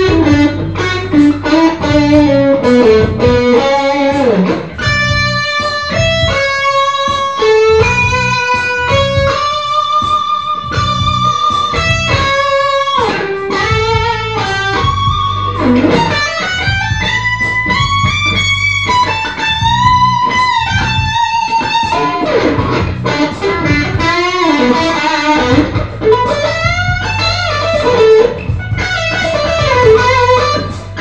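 Electric guitar playing an instrumental lead: long singing notes with string bends and vibrato, and a quick run of separate notes about five seconds in.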